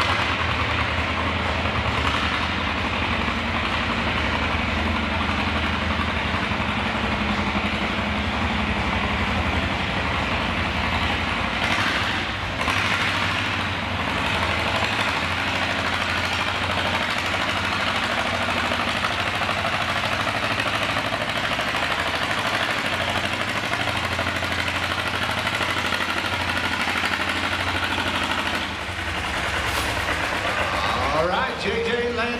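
John Deere G's two-cylinder engine idling steadily while the tractor is hitched to the pulling sled, waiting for its pull.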